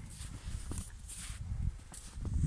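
A horse nosing and stepping about in snow right by the microphone: a few short hissing sniffs and crunches over a low rumble of close movement.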